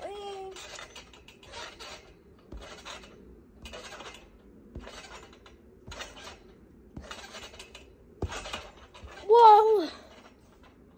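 Trampoline springs and mat creaking and jingling with each bounce, about one bounce a second. A girl gives a short loud vocal exclamation near the end, and a brief one at the start.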